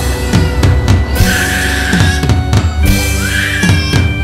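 Instrumental passage of a rock song: a drum kit beat over bass and guitar, with high squeal-like sounds laid over it, one about a second in and a rising one a little after three seconds.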